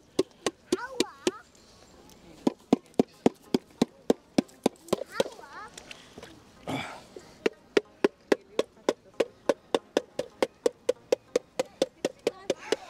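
Repeated sharp blows of a hammer on a mud-filled metal cash box to break it open, irregular at first, then a steady run of about three strikes a second in the second half.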